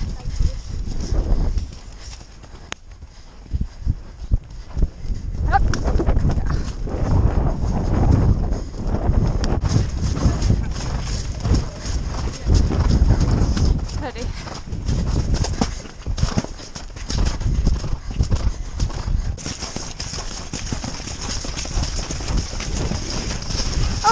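Horses' hooves thudding on soft grass turf as they are ridden at speed, heard close up from on horseback, an irregular run of dull beats throughout.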